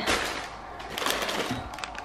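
Crumpled brown kraft packing paper rustling and crinkling as it is pulled out of a cardboard box.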